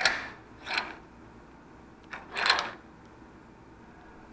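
Bench vise being tightened on a micrometer spindle wrapped in a rag: three short scraping, ratchety mechanical noises, one at the start, a fainter one under a second in, and a longer one about two and a half seconds in.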